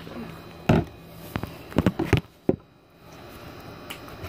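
Handling noise: a few short knocks and taps as the phone and a plastic slime tub are moved about.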